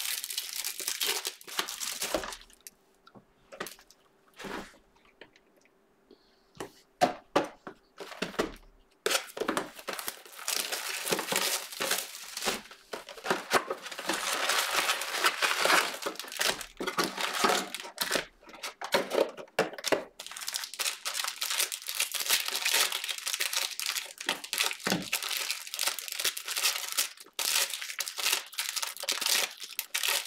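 Plastic crinkling and tearing as a Panini Prizm NFL cello multi-pack box is unwrapped and opened and its cellophane-wrapped packs are handled. A few seconds in it goes quieter, with only scattered clicks, then dense, continuous crinkling resumes about nine seconds in.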